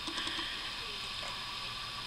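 Quiet room tone: a steady faint hiss with no distinct event.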